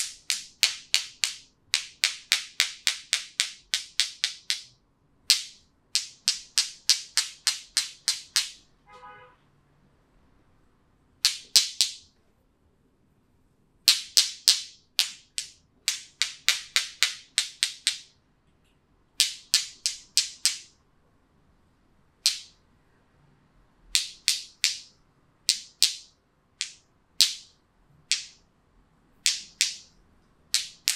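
Razor shaving stubble on a man's face: short, crisp scraping strokes in quick runs of about four a second, with pauses between runs.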